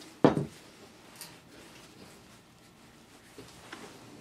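An aerosol can of tapping fluid set down on a wooden workbench with a single sharp knock just after the start, followed by a few faint clicks of hands taking hold of a metal tap wrench.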